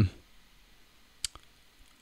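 Near silence in a pause between spoken phrases, broken by a single sharp click a little over a second in, with a fainter tick just after.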